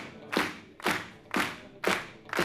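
Hand claps keeping a steady beat, about two a second, each with a short ring of the hall after it, with little else of the band sounding between the sung lines of the song.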